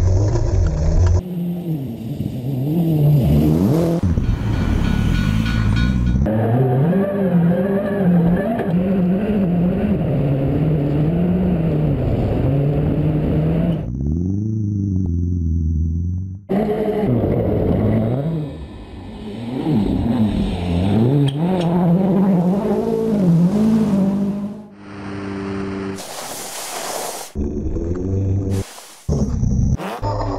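Ford rally car engine revving hard, its pitch climbing and dropping again and again through gear changes as it drives flat out on snow, heard in short segments that cut abruptly from one to the next.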